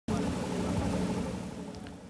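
Steady low engine drone over a noisy background hum, fading down toward the end.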